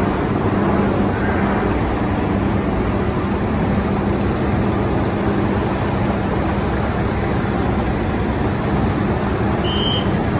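Diesel tractor engines and a hydraulic cane-unloading tipper ramp running steadily: a constant drone with a low hum. A short high squeak sounds near the end.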